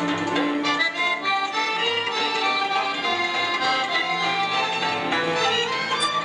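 Instrumental passage of a Moldovan folk band: accordion leading a run of quick notes over violins, cimbalom and double bass.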